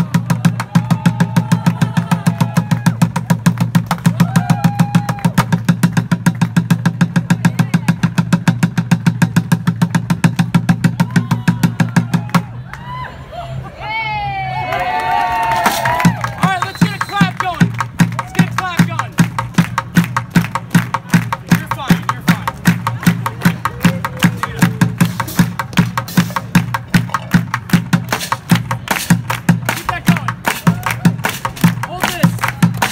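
Fast bucket drumming on plastic buckets, pots and cymbals, a dense steady run of strokes. About twelve seconds in the playing drops out for a couple of seconds while voices shout and whoop, then the drumming starts up again.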